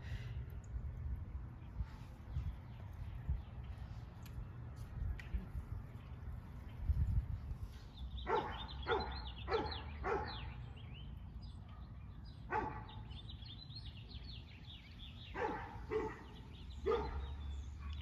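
A dog yipping in short, high calls: a quick run of about five about eight seconds in, one more a few seconds later, and a few more near the end. Wind rumbles on the microphone throughout.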